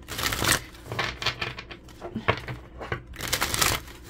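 A deck of cards being shuffled by hand, in several short papery bursts of riffling and flicking.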